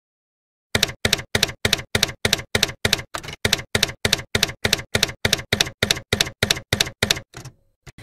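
Typewriter keystroke sound effect: a steady run of about twenty sharp key strikes, roughly three a second, starting about a second in and stopping just after seven seconds, as text is typed out on screen.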